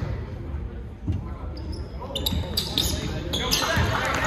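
Basketball bouncing on a hardwood gym floor, a few thumps about a second apart, with short high squeaks of sneakers on the court, in an echoing gym.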